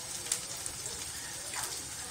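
Onions and dry spices frying in hot oil in a kadhai, a steady sizzle with a few faint crackles, as the onions brown.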